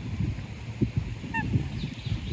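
A waterbird gives one short call about one and a half seconds in, over a constant gusty low rumble of wind on the microphone.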